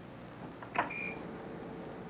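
A desktop computer being switched on: a click, a short high beep, then a steady low hum that carries on.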